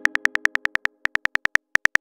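Phone on-screen keyboard clicks as a text message is typed: quick runs of about ten taps a second with short pauses between them.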